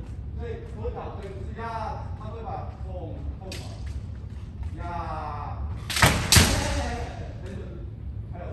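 Kendo strikes: two sharp cracks of bamboo shinai on armour and stamping feet on the wooden floor, about a third of a second apart near six seconds in, echoing in a large hall. Shouted voices of the kendoka sound around them.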